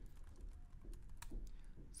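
Computer keyboard keys clicking faintly: a few scattered, irregular keystrokes.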